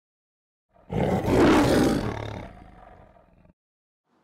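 A single lion roar, a sound effect, starting about a second in and fading out over the next two seconds.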